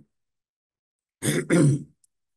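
A man clearing his throat twice in quick succession, starting about a second in after a moment of silence.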